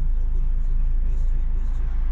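Car engine idling while the car is stopped in traffic, a steady low rumble heard from inside the cabin.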